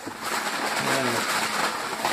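Crumpled packing paper crackling and rustling as a hand rummages in a cardboard box and pulls out a paper-wrapped item.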